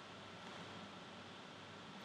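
Near silence: a faint, steady hiss of room tone with a thin, faint high tone running through it.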